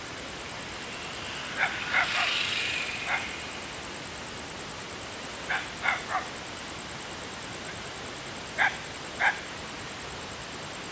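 A dog barking in short bursts, about eight barks in three groups (three, three, then two), over a steady hiss.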